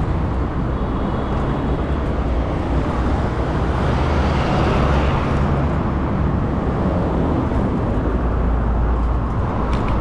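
Steady street traffic noise with a deep rumble. A vehicle swells past about four to five seconds in.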